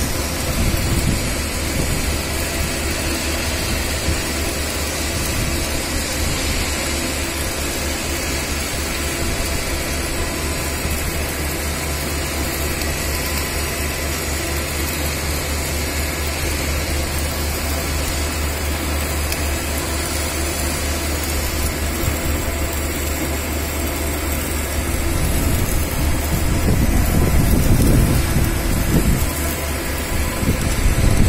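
Steady low machine hum with an even hiss from workshop machinery running; a rougher low rumble swells about 25 seconds in and fades after a few seconds.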